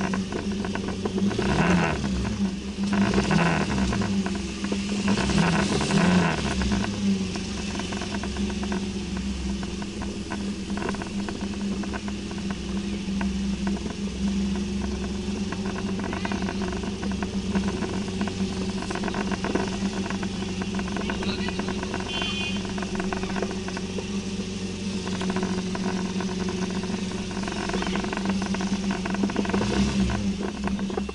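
Scooter engine running steadily while riding, its pitch rising and falling a few times in the first several seconds. A brief high tone sounds about three-quarters of the way through.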